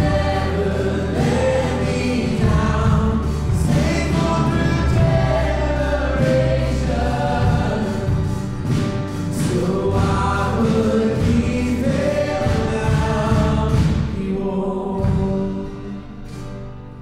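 Live contemporary worship band playing a song: several voices singing together over drums, bass guitar, guitar and piano. Near the end the band drops back and the music gets quieter.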